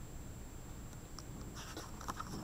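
Faint scratching and brushing of fingers on a picture book's paper page, a few soft strokes about a second in and again near the end.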